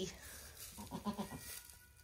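Goat giving a few short, faint bleats about a second in.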